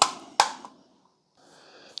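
Two sharp plastic clicks about half a second apart from a DYMO embossing label maker being handled as its tape compartment is closed after loading a new tape reel.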